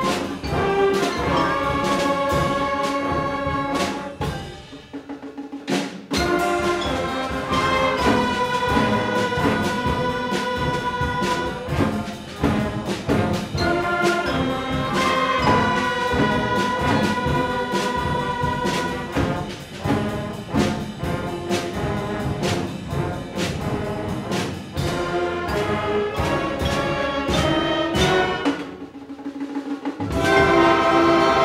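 Middle school concert band playing, with sustained brass chords over percussion strikes. The music drops to a quiet moment about five seconds in and again near the end, then comes back in loud.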